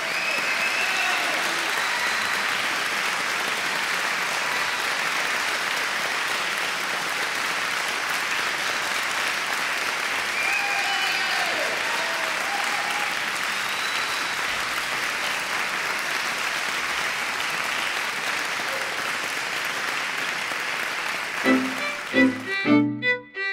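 An audience applauding, a steady even clapping. Near the end it gives way to violin music.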